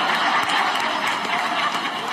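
Live audience laughing and applauding after a stand-up punchline, a steady crowd noise that eases slightly toward the end.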